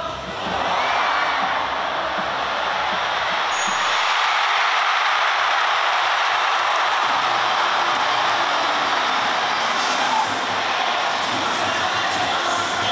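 Baseball stadium crowd cheering loudly, swelling up about half a second in and holding steady, in response to an outfielder's diving catch.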